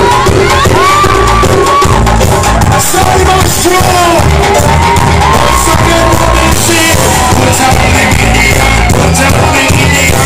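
Live reggae band playing a dancehall riddim with a heavy bass line and drums, a vocalist singing over it through the PA, and some shouts from the crowd.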